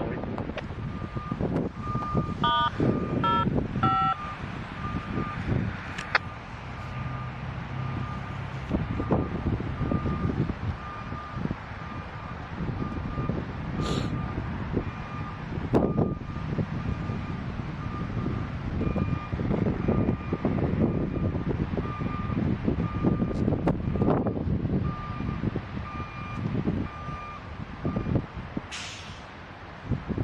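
Backup alarm of a Sperry Rail Service hi-rail inspection truck beeping steadily as the truck reverses along the track; the beeps stop near the end. Wind rumbles on the microphone throughout.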